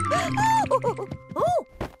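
Cartoon background music with a run of short comic sound effects that each rise and fall in pitch, then a few knocks near the end.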